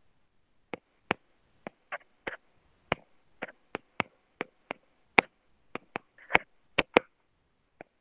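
Irregular short, sharp clicks and taps, about two or three a second, with dead silence in between.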